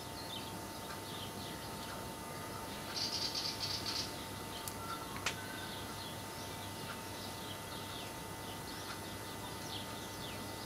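Many short, high chirps throughout, as of small birds, with a brief rapid rattle about three seconds in that is the loudest sound, followed by two sharp ticks a little over a second later. A faint steady hum runs underneath.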